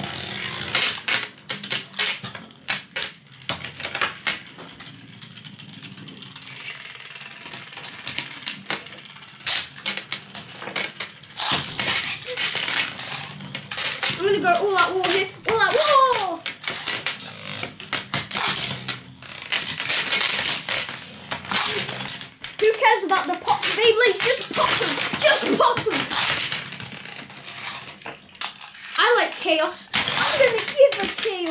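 Metal Beyblade spinning tops clattering in a plastic tray: rapid sharp clicks and knocks as the spinning tops hit each other and the tray walls, with a steadier whir between collisions.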